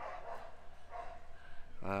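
A dog barking faintly in the background, two short barks over low outdoor ambient noise.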